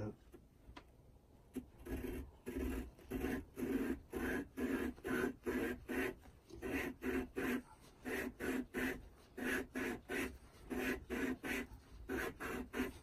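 Bronze cone of a Yanmar SD50 saildrive cone clutch being lapped by hand against its mating cone with grinding paste: a rhythmic gritty scraping, about two strokes a second, as the cone is twisted back and forth. It starts about a second and a half in.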